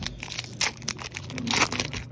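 Foil wrapper of a Mosaic Soccer trading card pack being torn open and crinkling in the hands, a rapid run of crackles with a louder rip about one and a half seconds in.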